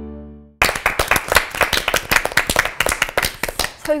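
A held chord from a short musical sting fades out, then a group claps in steady applause for about three seconds.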